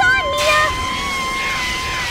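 Fire extinguisher spraying: a loud hiss that starts about half a second in and lasts about two seconds, over background music with steady held tones.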